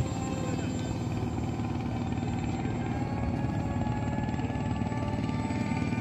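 Background music mixed with the steady drone of an electric RC model airplane's motor and propeller in flight.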